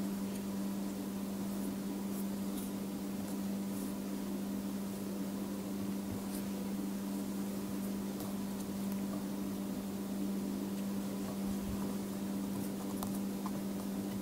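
A steady, unchanging low hum, like a machine or electrical hum in the room, with a few faint soft ticks.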